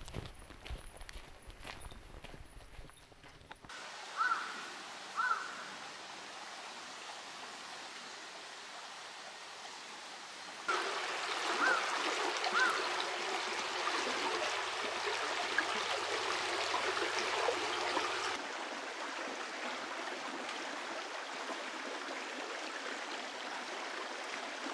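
Clear, shallow stream running over rocks, louder for a stretch in the middle, with a few short bird chirps. At the start, footsteps on a gravel path.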